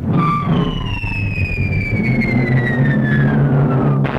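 A cartoon falling-whistle effect: one long whistle-like tone gliding steadily down in pitch, played over sustained low orchestral notes. It marks the characters sliding down the stairs.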